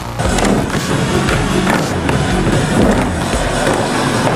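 Skateboard wheels rolling over the skatepark floor in a steady, loud rumble, with a few sharp clacks, over background music.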